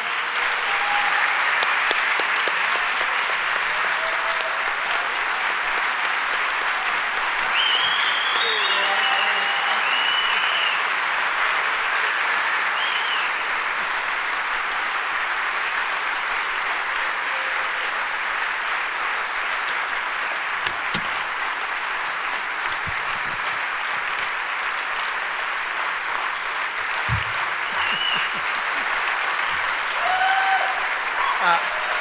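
Large audience applauding steadily and at length, with a few cheers rising over the clapping.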